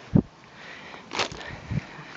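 Handling noise from a handheld camera being swung: a sharp, dull thump just after the start, then brief rustling and a softer knock near the end.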